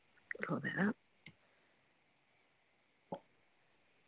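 Mostly near silence on a video call: a brief spoken word just after the start, then two short clicks, a faint one about a second in and a louder one near the end.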